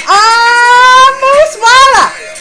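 A woman's high, excited vocal exclamation: a long held 'ohh' of about a second, then a second short cry that rises in pitch near the end.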